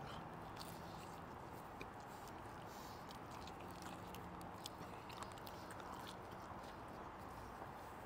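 Faint chewing of a burrito, with small scattered mouth clicks, over a low steady background hiss.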